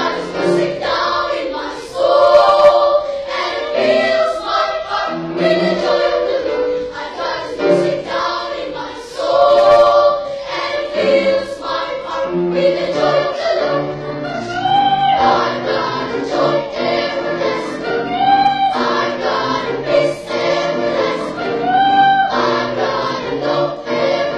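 Children's choir singing in harmony, several voice parts holding and moving between notes, heard from the audience in the hall.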